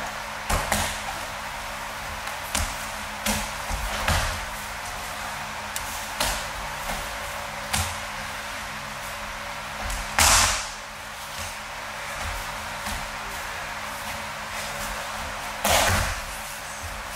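Aikido throws and breakfalls: bodies and hands slapping and thudding onto the practice mats, about nine separate impacts at uneven intervals, the loudest about ten seconds in, over a steady background hiss.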